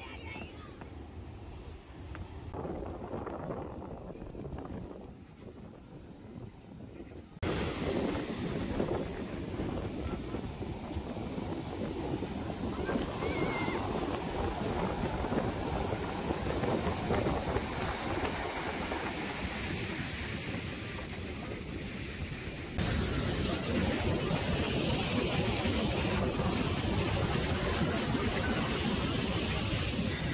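Ocean waves breaking on a sandy beach, heard as a steady rushing noise with wind buffeting the microphone. It is quieter for the first seven seconds, comes in abruptly louder about seven seconds in, and steps up louder again a little past two-thirds of the way through.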